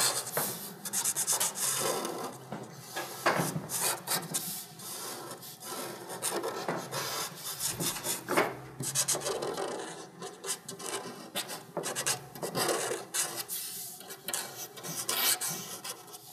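Pencil sketching on paper: rapid, irregular scratchy strokes of varying length.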